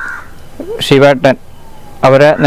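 A crow cawing once, briefly, right at the start, with a man's voice speaking a few syllables just after.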